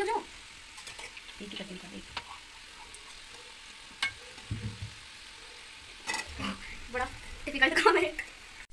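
Samosas deep-frying in hot oil in a kadai, a steady sizzle, with a slotted spoon clinking against the pan a few times as they are turned.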